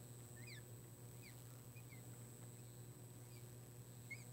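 Marker tip squeaking faintly on a glass lightboard as a row of short tick marks is drawn: about half a dozen brief squeaks, each sliding in pitch, over a steady low hum.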